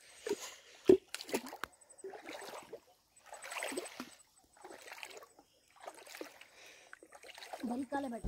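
Footsteps wading through a shallow stream, with water sloshing and splashing at each step, about one a second, and a few sharp knocks near the start.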